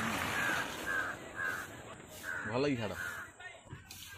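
A bird, likely a crow, calling in a quick run of short repeated notes, two or three a second, which stops about three seconds in; a voice speaks briefly near the end.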